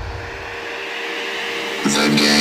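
A steady rushing noise with a faint held low tone, slowly swelling in level. Near the end, the song's electronic music comes in.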